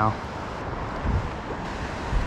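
Steady rushing noise of flowing river water, with wind buffeting the microphone in low rumbles about a second in and again near the end.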